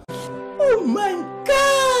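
A man's voice letting out drawn-out exclamations over a steady music backing: a short dipping-and-rising call, then about halfway through a long "wow" that slides down in pitch.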